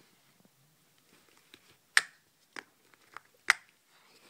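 Sharp clicks of plastic Skylanders figures being picked up and knocked against one another: two loud clicks about a second and a half apart, with a few fainter ones between.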